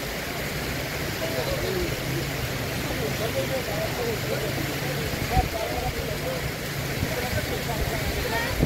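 A jeep's engine idling with a steady low hum under the constant rush of a fast mountain river, with indistinct voices of a crowd.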